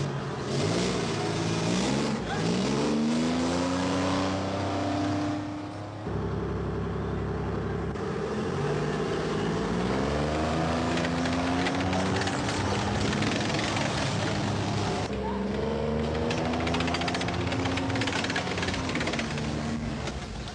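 Motor vehicle engines accelerating, their pitch rising steadily three times as the vehicles gather speed, over a steady low rumble. The sound changes abruptly about six seconds in and again about fifteen seconds in.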